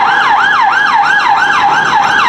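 Emergency vehicle siren in fast yelp mode, its pitch sweeping up and down about five times a second.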